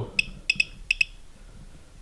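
G318+ handheld RF detector beeping through its speaker: five short high beeps in the first second, as it picks up a radio signal.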